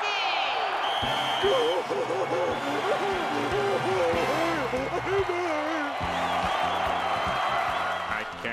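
Cartoon race crowd cheering steadily. A wavering pitched sound rides over it from about a second in until about six seconds.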